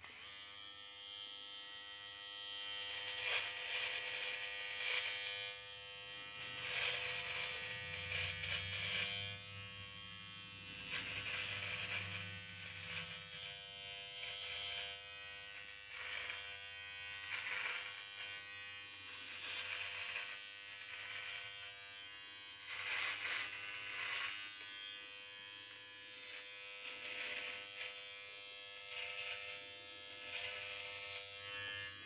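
Battery-powered Gillette Intimate Trimmer running with a steady electric buzz while cutting beard hair with its adjustable comb set to 3 mm. The sound swells every second or two as each stroke passes through the goatee.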